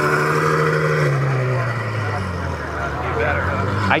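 Ferrari F12tdf's 6.3-litre V12 running at low speed as the car pulls away. Its note holds steady for about a second, then falls gradually in pitch.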